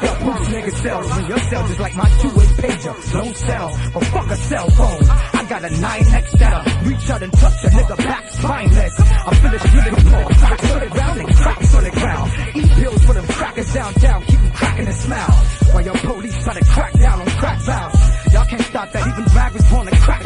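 Hip hop track with a heavy, steady bass-drum beat and a rapper's voice over it.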